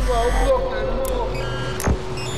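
Electronic music: a warbling, gliding synth line over a steady low bass and a held tone, with one sharp percussive hit just before the end.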